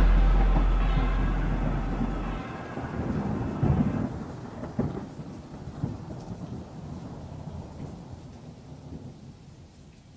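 Thunder rumbling with rain, laid on the soundtrack as an effect, fading out steadily; a few sharp cracks come about four to six seconds in.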